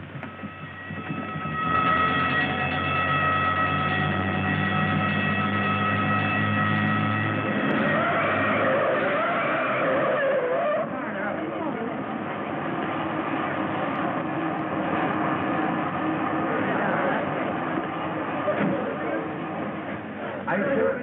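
Film soundtrack of police cars speeding off. A loud steady siren tone holds for about six seconds and cuts off suddenly, followed by car engine noise and the excited voices of a crowd.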